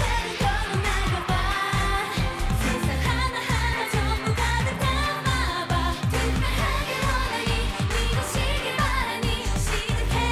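Female K-pop group singing over a dance-pop backing track with a steady bass beat.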